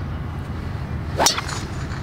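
Golf driver swung through and striking a teed ball: one sharp swish and crack of the clubface about a second and a quarter in.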